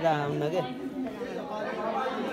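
Several people talking over one another, one voice clear at first, then softer mixed voices.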